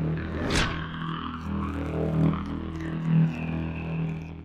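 Logo sting sound effect for the end card: a whoosh sweeps through about half a second in, over a low synthesized drone with held notes that swell and fade.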